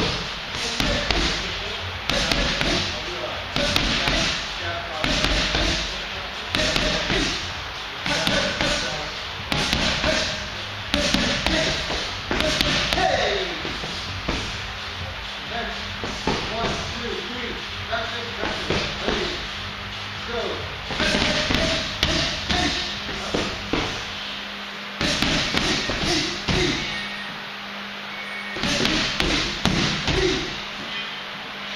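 Gloved punches and kicks striking a pair of Thai pads, a run of sharp slaps and thuds in bursts of several strikes with short breaks between combinations.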